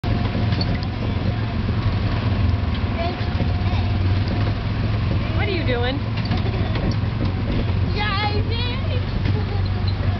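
Steady low drone of a Disneyland Autopia ride car's small gasoline engine running as the car drives along the track. A young child's high, wavering voice rises over it twice, loudest about eight seconds in.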